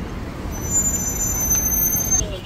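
Road traffic noise: cars moving slowly close by in congested street traffic, a steady rumble and hiss.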